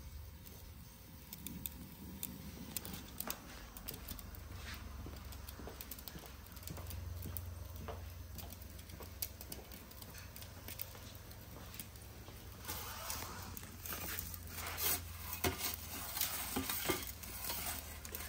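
Gas burner of an OVENart Nero pizza oven running on a low flame with a steady low rumble, while the baking pizza gives faint crackles and small clicks that grow busier in the last few seconds.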